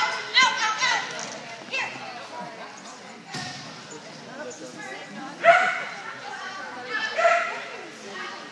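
Small dog barking in short, high-pitched yips that fall in pitch, a handful spread through the run, with a brief rush of noise about three seconds in.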